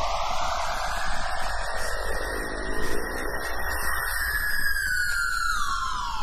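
Experimental music for orchestra and electronic tape: a noisy band of sound sweeps upward in pitch, holds, then slides back down. Several falling gliding tones come in near the end.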